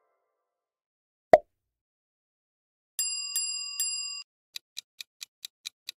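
Quiz sound effects: a single short pop about a second in, then a bell struck three times in quick succession, then a countdown clock ticking about four to five times a second.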